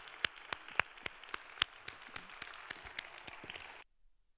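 Audience applause in a theatre: a wash of clapping with distinct individual hand claps standing out, cutting off abruptly near the end.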